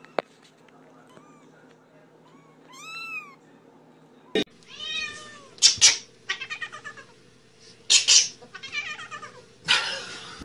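Cats meowing: a few thin arched meows in the first three seconds, the loudest about three seconds in, then a sharp click and a denser run of louder meows and yowls through the second half.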